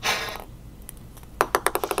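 A short puff of breath blown through a clear plastic tube, then a ping pong ball bouncing on the tabletop near the end, the bounces coming quicker and quicker as it settles.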